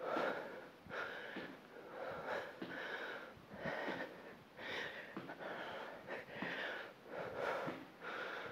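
A woman breathing hard and fast from exertion, a short breath about every half second to second.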